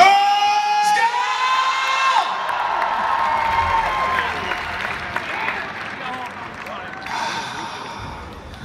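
Large arena crowd cheering and whooping, with a long high held scream starting right away and another wavering one over the next few seconds, then the cheering and applause fade.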